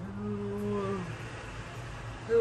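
A man's voice held on one low note for about a second, a hum of effort, falling slightly as it ends. A faint steady low hum continues underneath.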